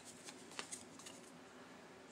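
Faint clicks and light scraping of a tarot card being handled and picked up off a glass tabletop: a few small ticks in the first second, then quiet.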